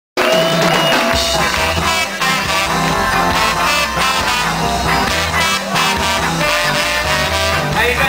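Live ska band playing: a steady ska/reggae groove with bass and drums, keyboard and trombone, with a singer at the microphone.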